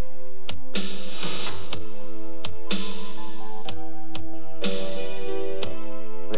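Ensoniq VFX synthesizer music: sustained chords played over a programmed electronic drum beat, with a snare-like hit at each chord change about every two seconds.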